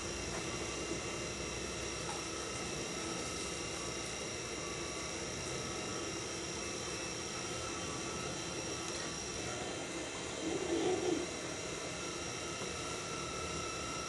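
Electric potter's wheel running at a steady speed, its motor giving a constant hum with a few steady whining tones, and a brief louder sound about ten seconds in.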